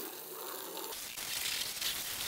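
Water from an Armor All garden-hose spray wand hitting a car's wet body panels: a steady hiss and patter of spray, a little louder from about a second in.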